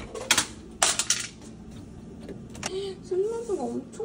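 Kitchen items being handled: a few sharp clicks and clinks in the first second and a half, another near the middle, then a short wavering pitched sound near the end.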